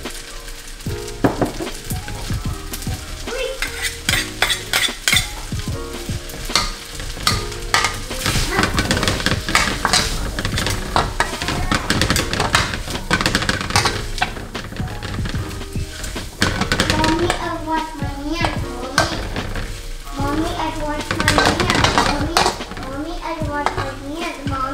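Rice noodles sizzling in a wok as they are stirred and tossed with a metal ladle, with frequent sharp clinks and scrapes of the utensils against the wok.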